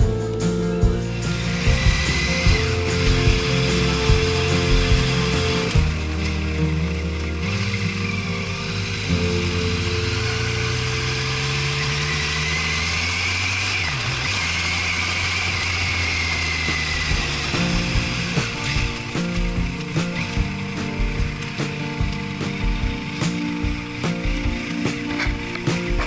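Motorcycle engine running under way, its pitch climbing steadily around the middle as the bike accelerates, mixed with background music.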